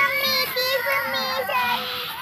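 A high, child-like singing voice holding wavering notes, laid over the clip as a soundtrack.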